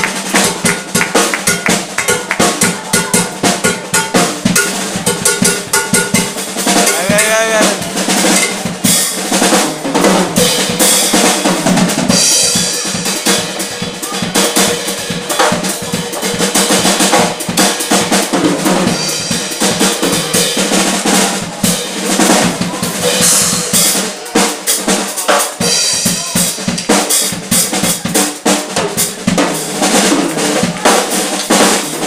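Drum kit played live in a busy passage of snare, rimshot and bass-drum strokes, with electric bass and keyboard playing underneath.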